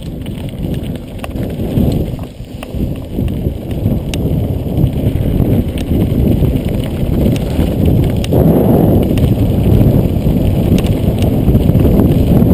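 A mountain bike rolling down a dirt track: the tyres run over dirt and gravel and the bike rattles and clicks over the bumps. It gets louder as the speed builds.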